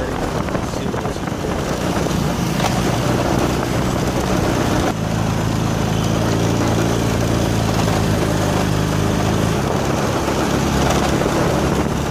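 Engine of the moving vehicle carrying the camera running as it drives along a street, with road and wind noise. About five seconds in, the engine settles into a steady low hum.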